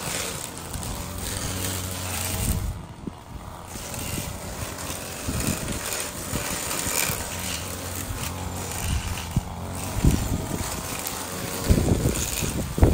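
String trimmer running steadily while it cuts grass along a fence line, its sound dropping off briefly about three seconds in.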